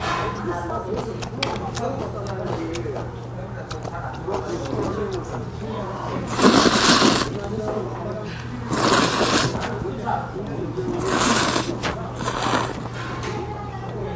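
Jjamppong noodles being slurped from the bowl: four loud slurps, the first about six seconds in, then roughly every two seconds, over a steady low hum.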